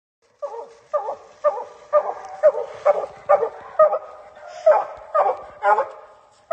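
Hunting hound barking steadily at a tree, about two barks a second with a brief pause just past the middle: the tree bark of a coonhound that has a raccoon treed.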